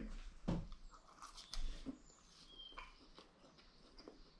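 Quiet eating: a few faint taps of a metal fork on a plate and soft chewing, mostly in the first couple of seconds.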